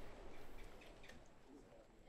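Faint outdoor ambience with a few faint, brief bird chirps, fading toward near silence.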